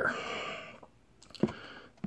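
Plastic hair-product bottles being handled, with a short sharp knock about one and a half seconds in.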